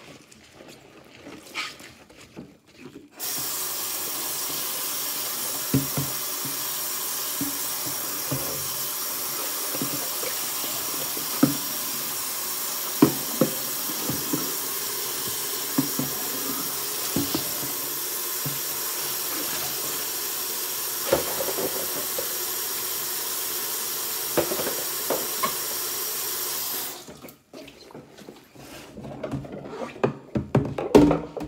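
Kitchen faucet turned on about three seconds in, running steadily into a stainless steel sink while dishes are rinsed, then shut off near the end. Scattered light knocks of dishware against the sink sound over the running water.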